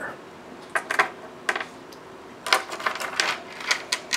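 Small crystals clicking against one another and tapping on a wooden tabletop as they are set down and sorted by hand: scattered light clicks, a few at first and then a busier run in the second half.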